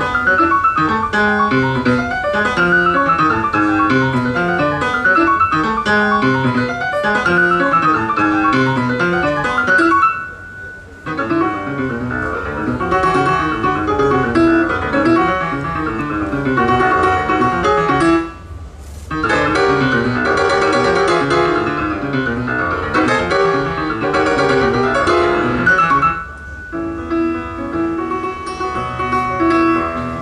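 Solo jazz piano on a Yamaha grand: busy, fast-moving lines that break off briefly about ten seconds in and again just before twenty seconds, then settle into a more even, repeated figure near the end.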